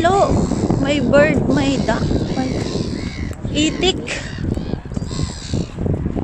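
Gulls calling: several short, harsh, wavering cries, one at the start, a couple about a second in and another around four seconds in, over a steady low rumble.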